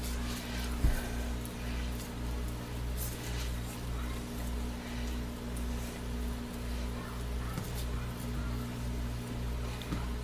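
Faint scraping of a silicone spatula smoothing thick, already-setting soap batter in a plastic mold, over a steady low hum; one short knock about a second in.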